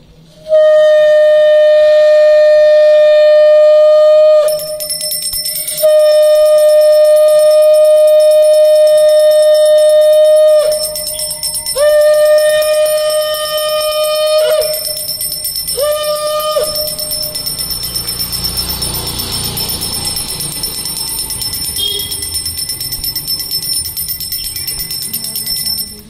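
A conch shell (shankha) blown in four steady blasts, the first three long and the last short, each sagging in pitch as it dies away, while a brass puja hand bell rings rapidly and continuously from a few seconds in.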